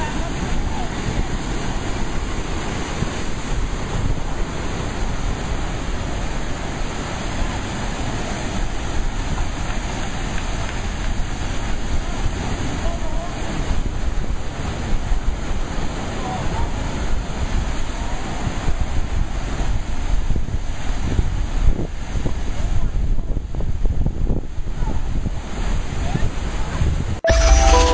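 Ocean waves surging into a rock-walled pool, sea water pouring over the lava-rock ledges and churning as whitewater in a steady, unbroken rush, with wind buffeting the microphone. The surge grows a little louder over the last few seconds.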